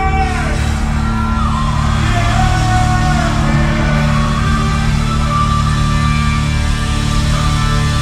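Loud music over a concert sound system, with a heavy, steady bass and long held melodic notes, one sliding down in pitch.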